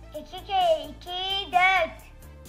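A high-pitched, childlike voice chants the next line of the twos times table, "2 kere 2, 4", in three short phrases over light children's background music with a steady beat.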